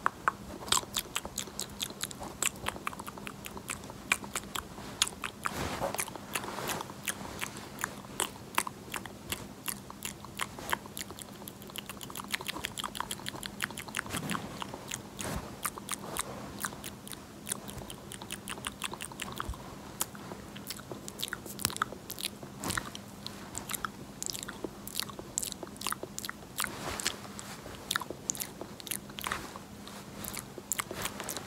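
Close-miked ASMR trigger sounds: a dense run of crisp clicks and taps, several a second, with louder pops scattered among them. A faint steady hum runs underneath.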